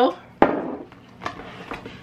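A single sharp knock, about half a second in, of a seasoning shaker set down on a kitchen counter. It is followed by a brief scraping rustle and a couple of faint taps as kitchen things are handled.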